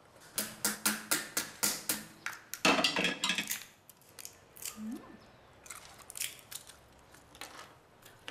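Wild walnuts being cracked with a metal hammer on a chair seat: a quick run of sharp knocks at about three a second, then a louder burst of crunching blows in the middle, and a few scattered knocks near the end.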